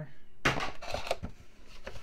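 Foil booster pack wrappers and a cardboard box being handled: a sharp tap about half a second in, then a second or so of crinkling rustles.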